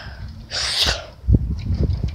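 A short, breathy burst of air from a person, about half a second in, followed by a few low thumps.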